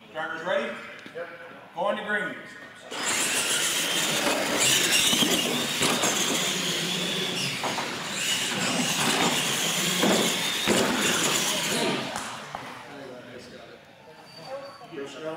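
Radio-controlled monster trucks racing side by side on a concrete floor: a loud, steady whine of motors and gears with tyre noise, starting about three seconds in and easing off near the end, with a couple of sharp knocks along the way.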